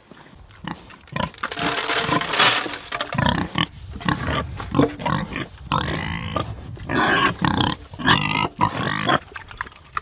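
Several domestic pigs grunting and squealing at close range, short calls overlapping in quick succession. The loudest, a shrill squeal, comes about two seconds in.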